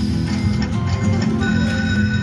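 Poker machine game music and electronic sound effects during a free-games feature, with a held, chiming high tone coming in about one and a half seconds in.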